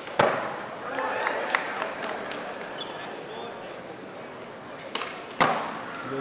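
A skateboard smacking down hard on the smooth floor just after the start, then a second sharp board smack about five seconds later, over crowd chatter and scattered shouts from spectators.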